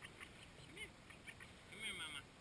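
Mallard ducklings peeping in short, high chirps, with a mallard hen quacking, loudest near the end.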